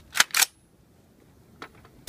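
Two sharp metallic clacks about a fifth of a second apart from an LWRC M6A2 rifle being charged: the charging handle pulled back and the bolt running forward to chamber a round from the magazine. A faint click follows near the end.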